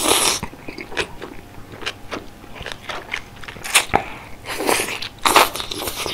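Close-miked eating of mala soup noodles: a brief slurp of noodles right at the start, then wet chewing with many small clicks. A few louder wet bursts come near the end.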